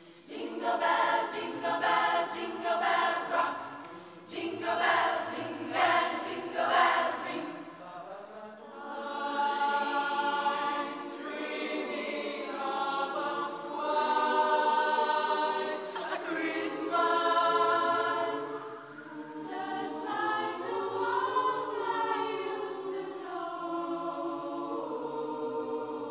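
Youth choir singing a cappella in close harmony, part of a Christmas medley. The first several seconds are short rhythmic phrases with crisp consonant attacks; from about nine seconds in the voices hold long sustained chords.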